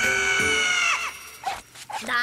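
A shouted line of dialogue whose last syllable is held as a long, loud cry on one pitch. It cuts off about a second in.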